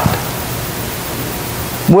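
Steady hiss of background noise, even across high and low pitches, in a pause between a man's spoken phrases. His voice comes back with a word right at the end.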